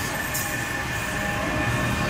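A brief gap in the dance music filled with steady rumbling hall noise and a faint high hum. The music comes back with a held chord just after.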